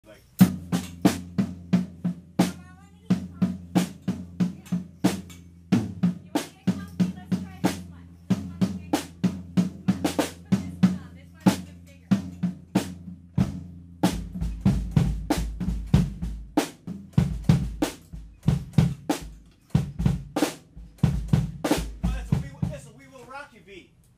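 Drum kit played in a steady beat, about three hits a second of snare and cymbal strokes, over a low sustained bass note that drops deeper from about halfway through.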